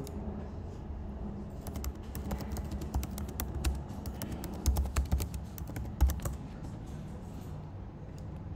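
Typing on a computer keyboard: a quick, uneven run of key clicks, with a few heavier strokes about five to six seconds in.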